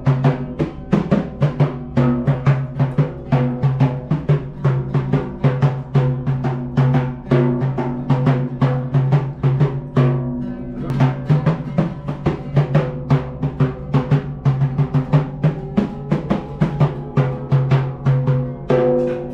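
A hand-struck frame drum beats a quick, steady rhythm while an oud plays along underneath. The drum strokes stop briefly about ten seconds in, and the oud carries on.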